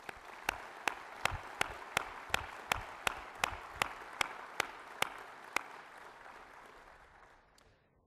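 Audience applauding, with one pair of hands clapping close by at about three claps a second until about five and a half seconds in; the applause then dies away near the end.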